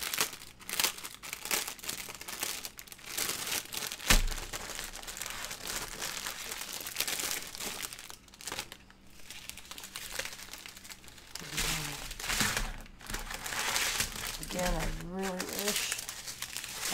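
Clear plastic packaging crinkling and rustling as a bag of diamond-painting drill packets is pulled open and the packets are taken out, with a single thump about four seconds in.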